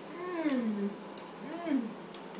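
A baby's wordless vocalizations: two drawn-out sounds, the first rising then sliding down in pitch, the second shorter, rising and falling.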